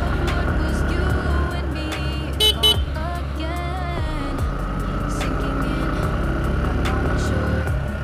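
Sport motorcycle engine running steadily at cruising speed with road and wind noise, heard from the rider's seat. Two quick horn toots come about two and a half seconds in.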